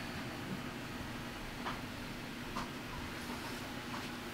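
Quiet room tone: a steady low electrical or ventilation hum, with a few faint light taps.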